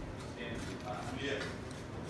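Soft, indistinct talking in a kitchen, with no clear handling sounds.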